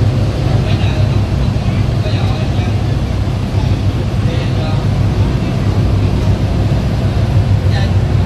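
A river car ferry's engine runs with a steady low drone, with passengers talking faintly over it.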